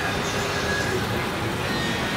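Steady background noise of street traffic, an even rush without breaks.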